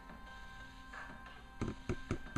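Faint music with steady held tones, then near the end a few sharp taps of remote-keyboard buttons being pressed while the Google TV menu is navigated.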